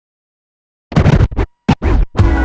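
Silence for about the first second, then a quick series of turntable scratches: a vinyl record pushed back and forth in short, sharp cuts with brief gaps between them.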